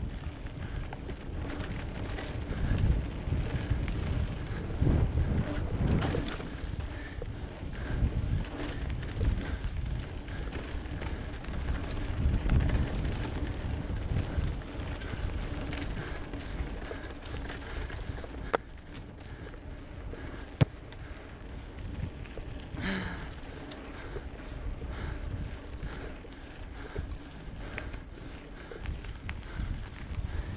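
Wind buffeting the microphone over the rumble and rattle of a bike going fast down a dirt singletrack, with a few sharp knocks.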